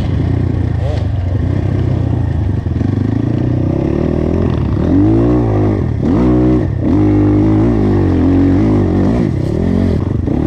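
ZUUM CR300NC enduro motorcycle's single-cylinder four-stroke engine running under load on a trail climb, heard close up from the bike. Steady for the first few seconds, then its pitch rises and falls several times from about five seconds in as the throttle is opened and closed.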